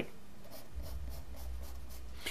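A pen scratching on a pad of paper as lines and a box are drawn, in short faint strokes, with a faint low hum underneath.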